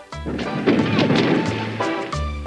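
A heavy splash as a man falls out of a small rowboat into the water, rising about a quarter second in and dying away near the end, over background music with low bass notes.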